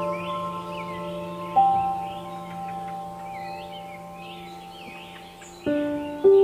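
Soft ambient background music of bell-like notes that ring out and slowly fade, with birdsong chirping throughout. A new note is struck about a second and a half in, and a fresh run of notes starts near the end.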